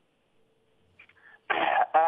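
Near silence, then about a second and a half in a man coughs once, heard through a telephone line.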